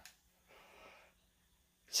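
Near silence, with one faint, soft breath about half a second in.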